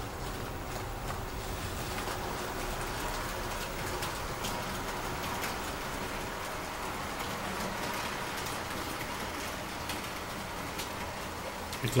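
Model freight train, two electric locomotives hauling heavy wagons, running steadily along the track: an even rolling rush of wheels on rails with faint light ticks.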